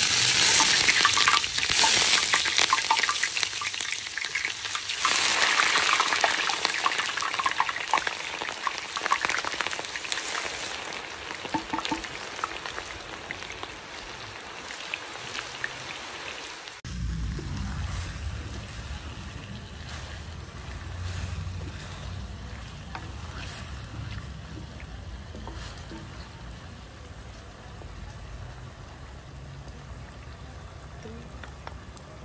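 Chopped onion hitting hot oil in a clay cazuela, sizzling and crackling loudly at first and fading gradually. After an abrupt cut about seventeen seconds in, a quieter frying sizzle carries on with a low hum under it.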